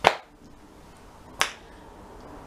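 Two sharp finger snaps, one right at the start and a second about a second and a half later.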